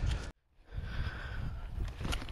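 Wind buffeting an outdoor microphone as a low, uneven rumble with faint hiss, broken by a brief total dropout about a third of a second in, where the recording is cut.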